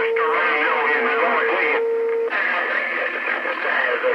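CB radio receiving distant skip transmissions through its speaker: garbled, warbling signals with a steady whistle tone laid over them that cuts off about two seconds in.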